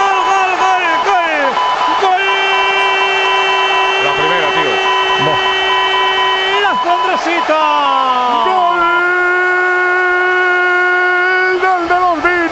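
Spanish radio football commentator's drawn-out goal cry, a long 'goooool' held on a steady high note for several seconds, sliding down in pitch and then held again, shouted to celebrate a goal.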